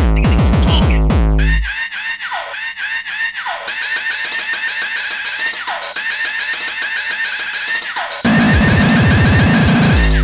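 Hardcore electronic dance music: rapid, heavy distorted kick drums. They drop out about two seconds in, leaving a synth melody with falling swoops. The kicks slam back in near the end.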